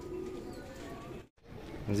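Pigeons cooing faintly, low wavering calls over a steady background, cut by a brief gap of silence a little past halfway.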